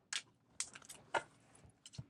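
A deck of tarot cards shuffled by hand: a few short, crisp snaps of cards slapping against each other, irregular and fairly quiet, with a small cluster about half a second to a second in.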